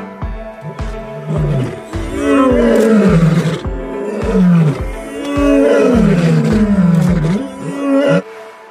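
Male lions roaring together: a run of long calls, each falling in pitch, over background music with a steady beat.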